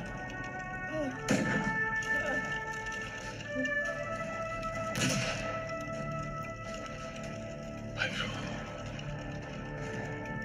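Film-score music with long sustained notes, broken by three sharp rifle shots about 1.3, 5 and 8 seconds in, the first the loudest.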